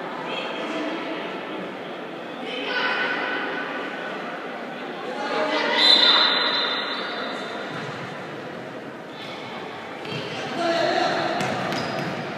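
Futsal game in an echoing sports hall: players and onlookers shouting on and off, loudest about halfway through, with the ball thudding off feet and the wooden floor.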